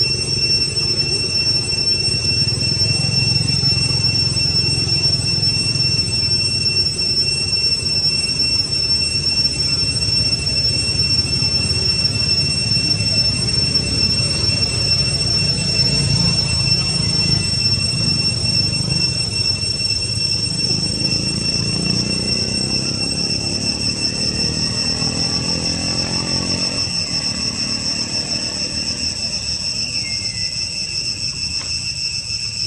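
A steady, high-pitched insect drone, typical of cicadas, runs unbroken over a low rumble. In the last few seconds a lower hum falls in pitch.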